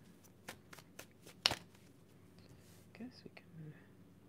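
A deck of tarot cards being shuffled and handled: a string of soft card clicks, with one sharper click about one and a half seconds in.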